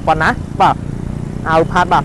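Speech: a person talking in short phrases, pausing briefly about a second in, with a steady low hum underneath.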